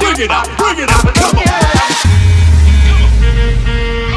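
Electronic dance music: falling pitch swoops over rapid drum hits, then a heavy bass comes in about halfway through under held synth notes.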